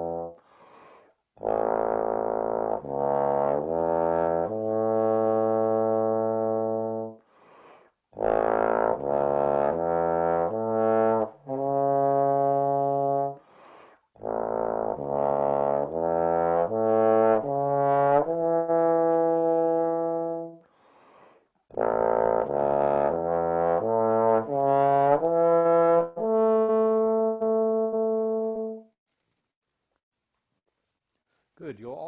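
Double-trigger bass trombone playing a slow A major study in the low register: four phrases, each a run of short notes that settles onto a long held note, with short breaks between.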